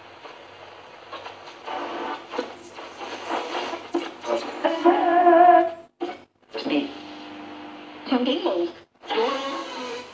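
Restored 1948–49 Ducati RR2050 valve radio being tuned across the band: snatches of broadcast speech and music come through its loudspeaker, changing as the dial moves, with two brief drop-outs between stations in the second half.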